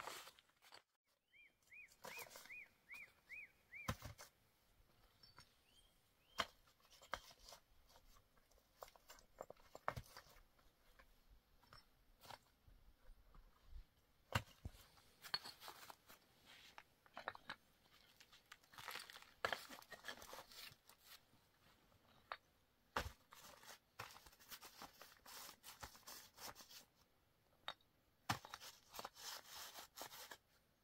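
Flat stones being laid by hand into a dry-stone floor: scattered irregular clicks and knocks of stone set down on stone, with scraping and shuffling between them. Near the start, a short run of five high chirps.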